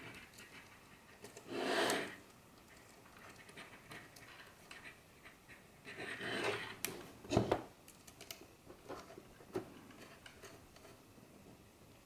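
Small brass SMA connectors and thin coaxial cables being handled and threaded together: faint clicks and rubbing. Two soft breath-like rushes come about two and six seconds in, and a sharper click comes about seven and a half seconds in.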